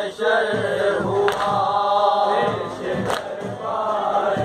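Group of men chanting a noha (Urdu mourning lament) together. Sharp slaps fall about every second and a half to two seconds, typical of matam chest-beating keeping time with the recitation.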